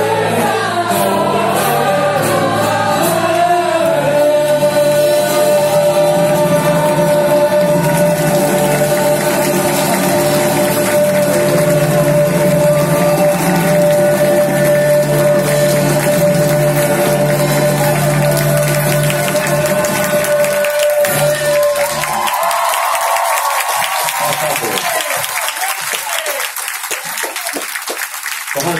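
Live band and voices singing a lively worship song, with one long note held steady for most of the song's final stretch. The music stops about three-quarters of the way through and the crowd applauds and cheers.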